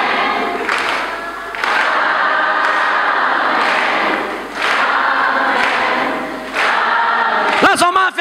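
A congregation's many voices raised together in a dense, continuous wash of overlapping singing and calling. Just before the end a man's amplified voice cuts in loudly, sweeping up and then falling in pitch.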